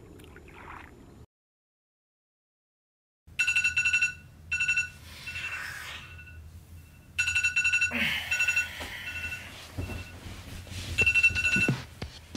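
After about two seconds of dead silence, a smartphone alarm goes off: a rapidly pulsing two-tone electronic ringtone that sounds in repeated loud bursts, with bedding rustling between them as the sleeper stirs and reaches for the phone.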